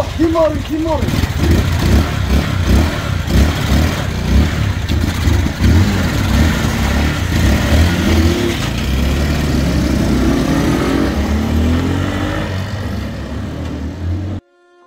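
Two small motorcycles revving in short blips, then pulling away and accelerating, their engine pitch rising in long glides.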